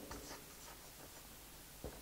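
Faint scratching of a felt-tip marker writing on flipchart paper.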